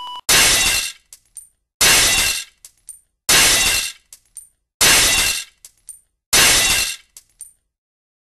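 Glass shattering: the same crash repeated five times, about a second and a half apart, each followed by a few small tinkles of falling pieces.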